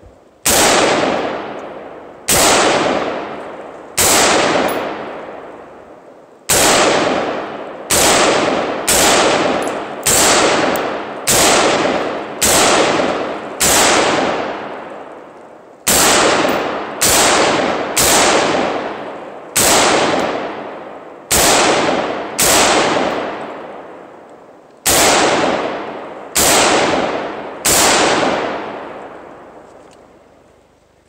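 AR-15 rifle fired semi-automatically: about twenty shots at roughly one a second, with a few short pauses, each crack trailing off over a second or so.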